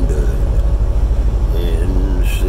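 Steady low rumble of engine and road noise inside a vehicle's cab at highway speed. A man's singing voice holds a note at the very start and comes in again near the end.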